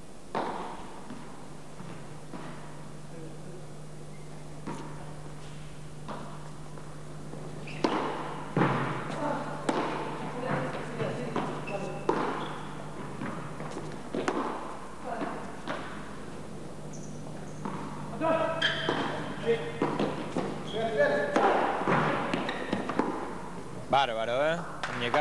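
Padel rally: solid padel paddles strike the ball, and the ball bounces off the court and glass walls in a run of sharp knocks at irregular intervals. The knocks come thickest in the second half, over a steady low hum.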